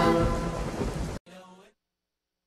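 Sung intro jingle with rain and thunder sound effects under it, growing quieter and cutting off suddenly about a second in.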